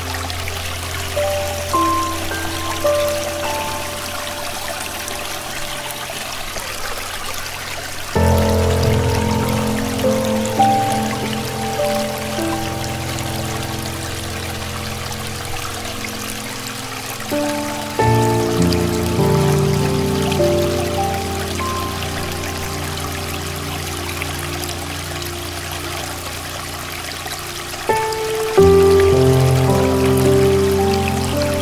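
Slow, soft solo piano playing gentle melody notes over low chords, with a new chord struck about every ten seconds. Steady flowing stream water runs underneath.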